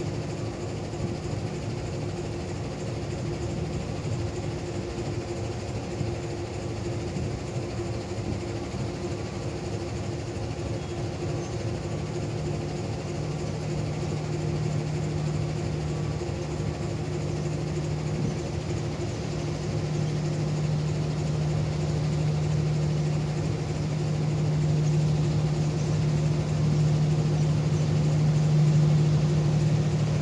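Diesel locomotive engine running as it draws a long-distance train set into the platform during shunting, a steady low hum that comes in about twelve seconds in and grows louder as it approaches.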